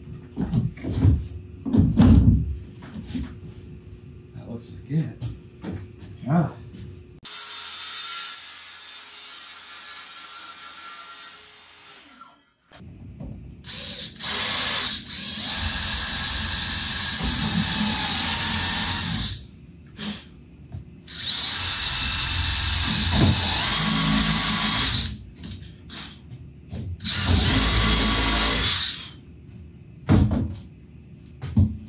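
Cordless drill running into a plywood frame in three long bursts of several seconds each, in the second half. Before that, scattered knocks and clunks, then a steady hiss lasting about five seconds.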